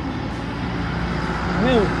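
A vehicle engine running steadily, with a person's voice briefly near the end.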